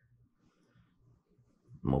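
Near silence: room tone for about a second and a half, then a man starts speaking near the end.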